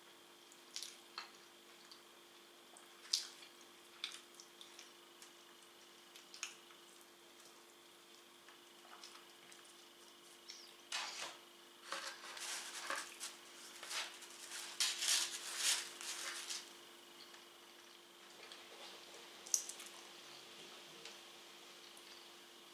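Close-up eating sounds of pizza: scattered wet mouth clicks and smacks from chewing, then a denser run of crackling and rustling about halfway through as a slice is pulled from the pizza in its cardboard box. A faint steady hum sits underneath.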